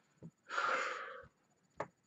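A man breathes out hard once, a noisy rush of breath lasting under a second, followed by a single short click near the end.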